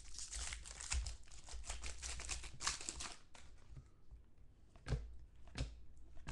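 Trading-card pack wrapper crinkling and cards sliding against each other as they are handled, dense crackling for about three seconds, then a few soft taps near the end.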